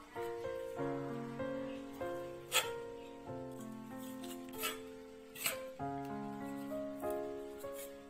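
Background instrumental music of held notes changing in steps. Three sharp clicks of a chef's knife on a marble cutting board as a red chili is cut and its seeds scraped out.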